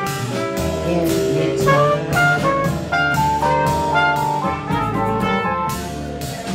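Live jazz band playing: a trumpet plays a melodic line of changing notes over drums with cymbals and the rest of the band.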